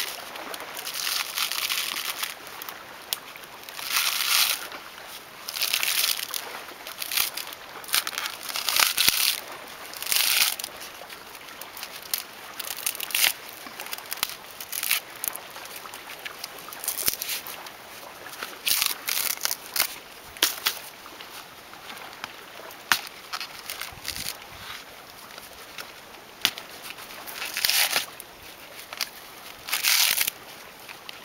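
Coconut husk being levered off on a sharpened stake: repeated crackling tears as the dry fibrous husk rips away from the nut, coming every second or two and growing sparser in the last third.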